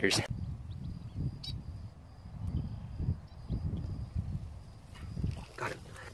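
Low, uneven rumble of wind and handling on a handheld phone microphone, with a single click about a second and a half in and a faint steady high whine. Near the end a man starts shouting excitedly.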